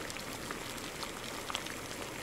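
Chicken tinola broth boiling in a wok, bubbling steadily with scattered small pops.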